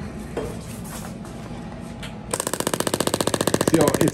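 Radial shockwave therapy applicator with a D20-S transmitter head firing into a slab of beef: a rapid, even machine-gun clicking that starts suddenly about two seconds in, at the set 15 pulses a second.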